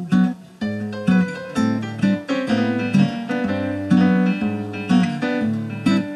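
Acoustic-electric guitar strumming chords in a steady rhythm, about two strokes a second, as an instrumental passage between sung lines.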